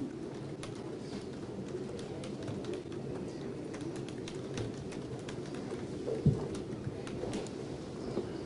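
Courtroom background noise: a steady low murmur with scattered light clicks and shuffling as people move about, and one dull thump a little over six seconds in.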